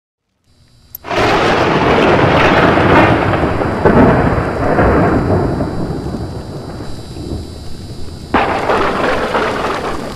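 Loud rumbling crash sound effect for an animated logo intro. It starts suddenly about a second in and fades slowly, with a sharp crack partway through. A second sudden crack and rumble near the end cuts off abruptly.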